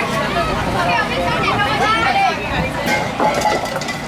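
Chatter of children and adults talking over one another outdoors.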